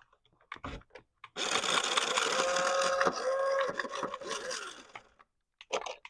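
Toy RC car's small electric drive motor and gearbox whirring as the wheels spin freely with the car held off the ground. The whine runs for about three and a half seconds, dips briefly in the middle, then winds down with falling pitch near the end.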